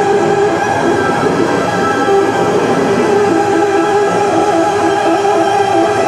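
Live bass-and-drums music: heavily distorted, processed electric bass and drums forming a dense, noisy wash, with a short pitched figure repeating through it.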